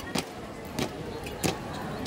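Boots of a marching drill squad stamping in step on a concrete court, sharp footfalls about every 0.6 seconds.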